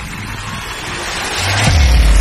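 Cinematic logo-intro sound effects: a noisy whoosh that swells steadily louder, then a deep boom near the end as heavy bass comes in.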